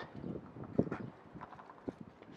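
Faint handling noise: light rustling, with a small knock about a second in and another near the end.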